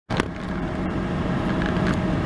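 Steady hum of a running car heard inside its cabin, with a short click just after the start.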